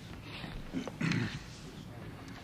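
Quiet room noise of a waiting press room on an old cassette recording, with a few small clicks and one brief muffled voice-like sound about a second in.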